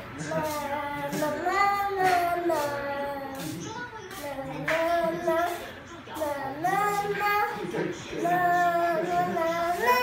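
A young girl singing a children's song in short phrases with long held notes, her pitch sliding up and down between notes.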